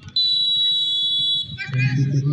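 Referee's whistle: one long, steady, high-pitched blast of about a second and a half, signalling the penalty kick to be taken. Voices from the crowd follow near the end.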